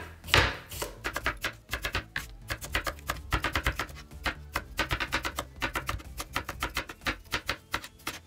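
Kitchen knife slicing a cucumber into thin rings on a wooden cutting board: a few separate cuts, then from about a second in a fast, even run of knife strikes on the board, several a second.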